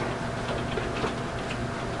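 Steady hiss and low hum from an infrared assistive listening receiver's audio feed, with a few faint light ticks or taps in the middle.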